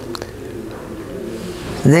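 A bird calling faintly, in low steady tones, with a small click shortly after the start.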